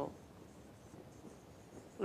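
Faint scratching of a marker writing on a whiteboard.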